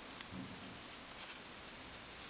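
Faint rustle of yarn and a few light clicks of a crochet hook as stitches are worked, over a steady hiss.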